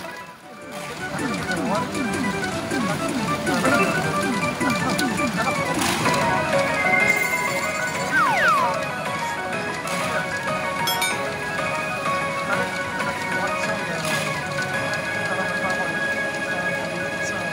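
P大海物語5 pachinko machine playing its jackpot-round music and sound effects, with a run of quick falling sweeps in the first few seconds.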